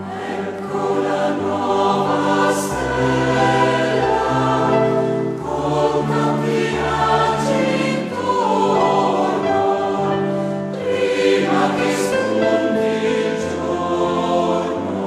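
Background choral music: a choir singing slow, held chords.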